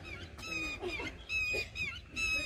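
Birds calling: a quick run of short, high-pitched calls, one after another, some flat and some bending in pitch.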